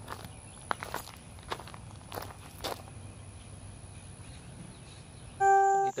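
A few irregular footsteps on gravel over a faint steady high-pitched whine. About five and a half seconds in, a loud steady tone abruptly cuts in.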